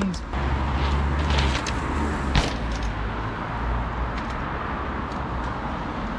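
Low outdoor rumble of tyres rolling on tarmac and passing road traffic under a mountain e-bike ride, with a single sharp knock about two and a half seconds in as the bike hits a small lip.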